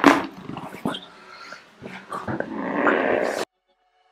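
A sudden loud burst right at the start of a chiropractic neck adjustment, then a person's drawn-out, breathy vocal sound from about two seconds in that cuts off abruptly.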